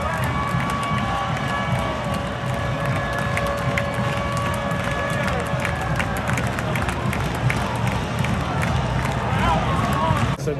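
Football stadium crowd noise with scattered cheering and claps, under a long held musical note that fades out about six seconds in.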